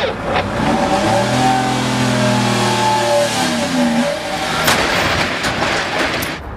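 A vehicle engine running with a steady note over a broad hiss, its pitch dropping away about four seconds in; a sharp knock comes just before five seconds.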